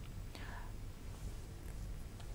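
Quiet pause between speech: a faint low hum of studio room tone, with a brief soft breath-like sound about half a second in.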